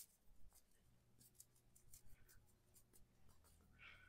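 Near silence: room tone with a few faint soft scratches and light taps as flour is sprinkled from a small plastic cup onto a stone countertop.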